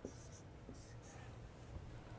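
Faint scratching of writing on a board: a few quick strokes in the first second.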